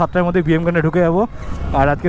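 A man talking, over the low steady rumble of a motorcycle riding slowly in traffic.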